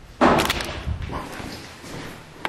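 A sudden loud bang about a quarter second in, sharp at the start, with a lower rumble that dies away over about a second.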